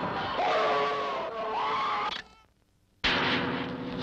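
Harsh engine-like noise with a wavering high scream over it, cut off abruptly a little over two seconds in. After nearly a second of silence it snaps back in loud, a steady motor drone with the same harsh edge.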